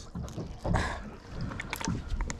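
Wind on the microphone and a low rumble on a drifting boat, with a short burst of hiss under a second in and a few small handling clicks near the end.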